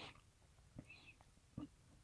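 Near silence: room tone, with two faint soft clicks about a second apart.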